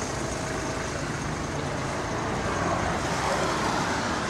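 Road traffic going by, a steady noise that swells a little after the halfway point.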